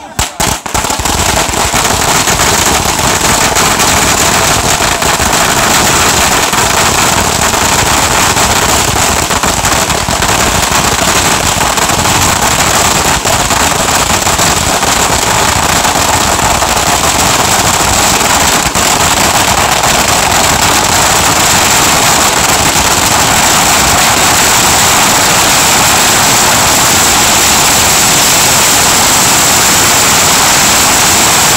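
Long strings of firecrackers bursting in one dense, unbroken crackle of rapid bangs. It starts loud about half a second in and does not let up.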